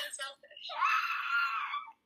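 A woman laughing hard: a few short bursts, then one long, high-pitched squealing laugh held for over a second.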